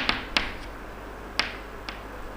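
Chalk clicking and tapping against a chalkboard as a word is written: about five sharp, irregular clicks, the loudest at the start and about a second and a half in.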